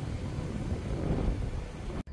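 Outdoor wind buffeting the microphone: a steady low rumble with uneven flutter and a faint hiss above it.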